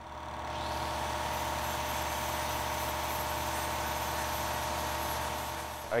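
A machine running steadily, a low hum under a hiss, fading in over the first second and fading out near the end.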